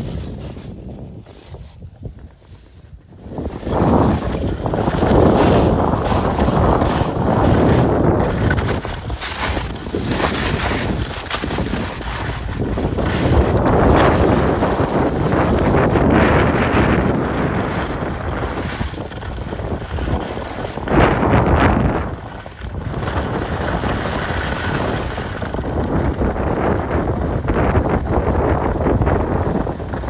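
Wind rushing over the microphone with skis scraping and hissing over packed snow during a ski run; quieter for the first few seconds, then loud and gusting.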